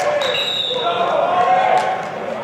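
Men's voices shouting and calling out during football practice drills, with a few dull thuds of players colliding in pads.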